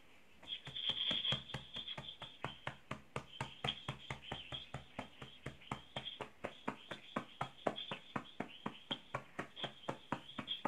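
A rapid, irregular series of light clicks, several a second, starting about half a second in and running on.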